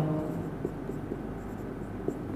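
Marker pen writing on a whiteboard: faint, short scratching strokes as a word is written.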